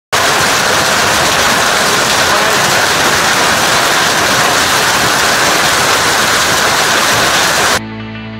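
Heavy hailstorm: dense hail pelting down on the ground and nearby roofs, a loud, steady rushing noise with no letup. It cuts off abruptly near the end, giving way to music with sustained notes.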